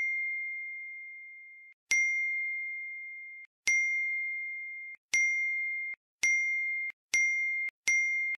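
A bright, bell-like notification ding sound effect, played over and over. Each ding rings and fades until the next one cuts it off. The dings come faster and faster, about two seconds apart at first and less than a second apart by the end.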